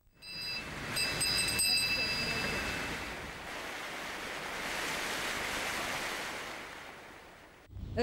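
Water splashing from a fountain's jets: a steady rushing hiss that swells in the middle and fades near the end. A few high ringing tones sound over it in the first few seconds.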